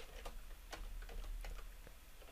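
Light, irregular keystrokes on a computer keyboard, a handful of separate clicks.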